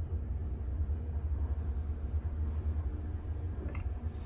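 Steady low hum inside a Schindler passenger lift car as it travels, with a faint click near the end.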